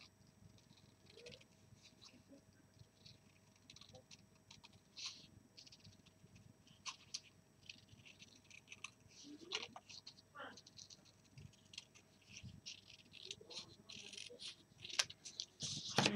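Faint snips of scissors cutting scrapbook paper, with light paper crinkling and scattered small clicks.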